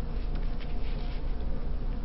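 Steady low buzzing hum, with a few faint light rustles about half a second in.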